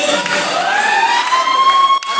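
A single high note that glides upward about a third of a second in and is then held steady for over a second, over background crowd noise.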